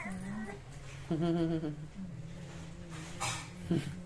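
Newborn baby whimpering and fussing in short, separate cries.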